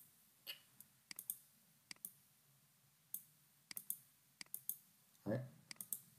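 Faint, irregular clicks of a computer mouse and keyboard, about fifteen short sharp clicks spaced unevenly over several seconds.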